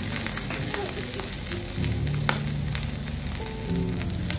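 Food sizzling steadily on a hot teppanyaki griddle, with small ticks and one sharp click a little over two seconds in.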